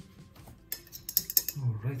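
A quick run of light metallic clinks and clicks as a paintbrush is handled against the metal paint palette and tins, followed by a man saying "alright".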